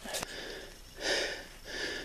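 A man breathing hard close to the microphone, two or three heavy breaths about a second apart: he is winded from hiking out uphill under a heavy pack of deer meat.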